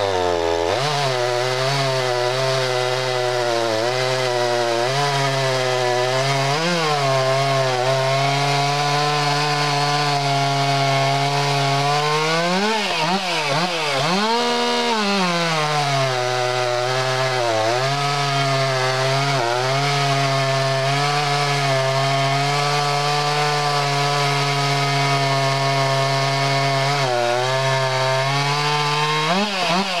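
Stihl MS362 C two-stroke chainsaw with a modified muffler, cutting through a thick log at full throttle, its pitch held steady under load. About halfway through, the revs swing up and down a few times, and near the end the cut finishes and the engine note falls.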